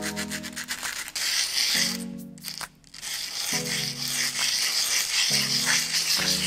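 A small piece of 18ct yellow gold rubbed by hand on a sheet of abrasive paper, a dry scratchy scraping that starts about a second in and runs on with a brief pause. Background music with plucked low string notes plays throughout.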